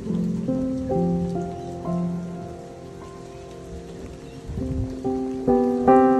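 Light rain falling, a steady hiss of drops, under background music of slow held notes that quietens in the middle and swells again near the end.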